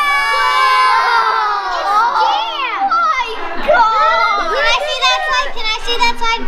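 A group of young children talking and exclaiming over one another, several high voices overlapping.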